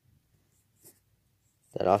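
Near silence with one faint, short click a little under a second in, from a small plastic Lego piece being handled. A man's voice starts near the end.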